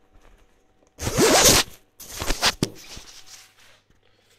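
Zipper on a thin nylon cycling windbreaker being pulled: two loud rasps, about a second in and again about two seconds in.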